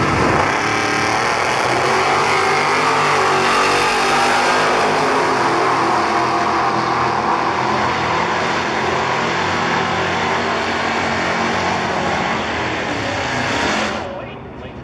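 Two drag cars launching and making a full-throttle quarter-mile pass, their engines loud and steady at wide-open throttle.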